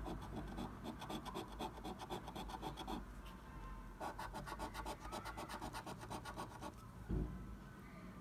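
A coin scraping the scratch-off coating of a paper scratch card in quick back-and-forth strokes, several a second, in two runs with a pause of about a second between them. A single low thump comes about seven seconds in.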